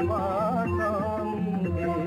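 A devotional song to the Mother goddess: a voice sings a wavering, ornamented line over a sustained drone and a steady low beat.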